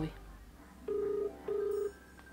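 Telephone ringback tone heard through a smartphone's speaker while an outgoing call rings: one double ring, two short steady beeps in quick succession.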